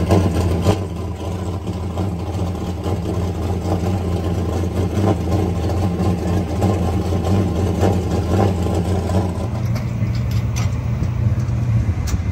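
Late model race car's carbureted V8 engine idling steadily, its low note getting a little stronger near the end. It has just been started after a clogged fuel filter and a failed fuel pump were fixed.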